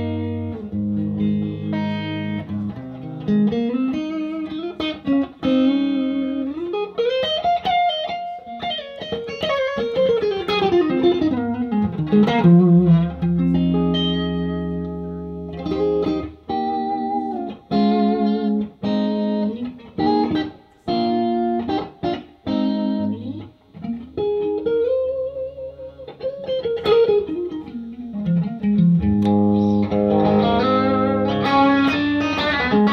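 1959 Fender Stratocaster played through an amplifier: single-note lead lines, with runs that climb and then fall back down twice, held notes, and a middle stretch of short, clipped notes.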